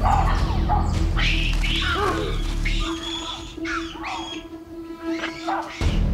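A baboon troop giving many short, sharp barks and screeches, the agitated calls of a troop in conflict, over background music with a steady held tone.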